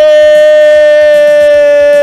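A man's voice holding one long, loud, steady high note: a drawn-out 'the' stretched out for effect in the middle of a phrase.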